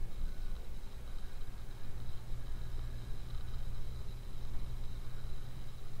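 Steady low hum with a faint, steady high-pitched whine over a light hiss: the recording's background noise, with no distinct sound events.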